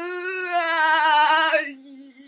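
A girl's voice holding one long sung note with a slight waver. It drops off in loudness about one and a half seconds in and trails on quietly.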